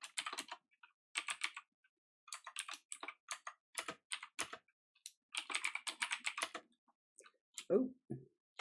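Computer keyboard typing in bursts of rapid keystrokes with short pauses between.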